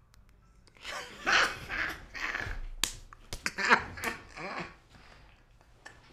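A man laughing in bursts into a close microphone, with a few sharp slaps about halfway through.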